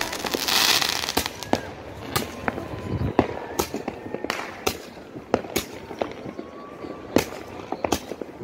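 Handheld fireworks, roman candles, firing: a hissing burst in the first second, then a string of sharp bangs at irregular intervals.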